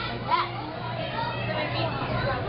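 Indistinct chatter of visitors, children's voices among them, echoing in a large hall, over a steady low hum.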